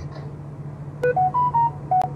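A click about a second in, then a quick electronic jingle of about five short beeps, stepping up and then down in pitch, over a steady low hum.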